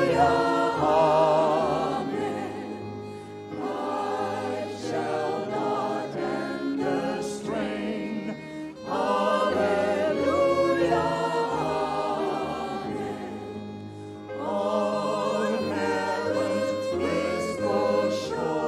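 A small mixed-voice ensemble sings a hymn in several parts with violin accompaniment. The singing comes in four phrases of a few seconds each, with a short breath between them.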